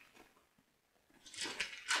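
Near silence, then Bible pages rustling as they are turned, starting a little past halfway.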